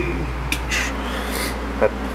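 A steady low hum, with a short breathy, hissing noise about half a second in.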